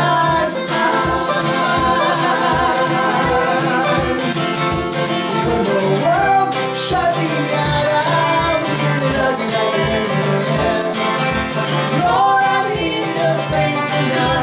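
Live acoustic band playing: strummed acoustic guitar and banjo with sung vocals that include a woman's voice, over a steady low beat about twice a second.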